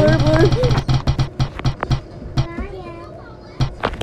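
Spin-the-wheel phone app ticking as its on-screen wheel spins, the clicks spacing out as the wheel slows, with a couple of final ticks near the end. A girl's voice is heard at the start and faintly in the middle.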